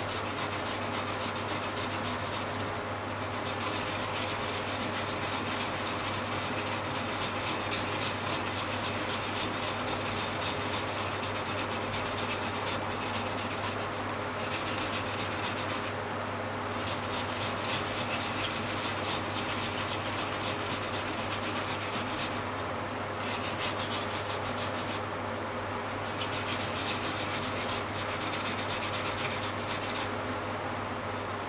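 Japanese mountain yam (yamaimo) grated by hand on a grater: a continuous, fast back-and-forth rasping rub, broken by a few short pauses.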